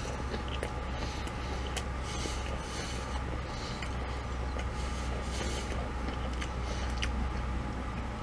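A steady low hum throughout, with faint scattered crunches and clicks of someone chewing a bite of burger dipped in spicy sauce and crunchy potato crumbles.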